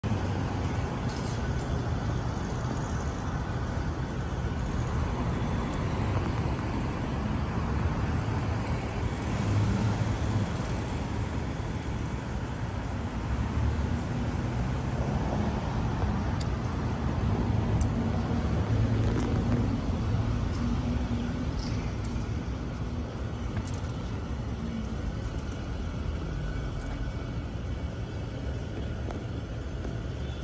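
Steady low rumble of street traffic, cars passing and running without a break, with a few faint ticks scattered through it.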